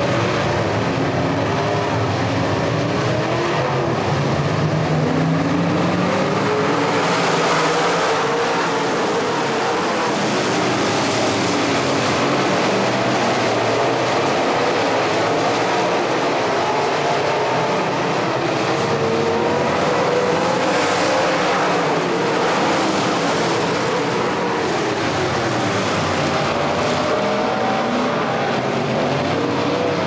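Dirt late model race cars running flat out on a dirt oval, their V8 engines rising and falling in pitch as the cars pass.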